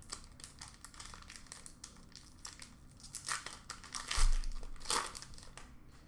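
Crinkling and tearing of the wrapper of an Upper Deck hockey card pack being ripped open and handled, a run of light crackles that gets busier about three to five seconds in. There is a short low bump at about four seconds.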